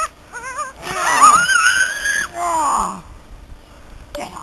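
A young person's play-acted scream: a short wavering cry, then a loud high-pitched scream held for over a second and rising slightly, then a wail that falls in pitch.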